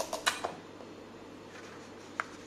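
A few short taps and rustles from a paper plate and craft pieces being handled on a table, bunched in the first half second; after that, quiet room tone.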